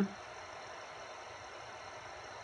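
Small AC induction motor, fed by a variable-frequency drive, running at speed with a steady, even whir.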